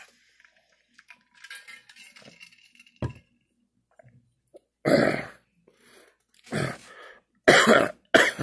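A man coughing three times in the second half, a second or so apart, from sinus drainage running down his throat. A single sharp click comes about three seconds in.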